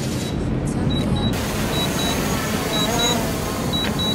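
DJI Mavic Pro quadcopter hovering overhead as it comes down to land on return-to-home, a steady rushing noise. A faint, high double beep repeats about once a second from its remote controller.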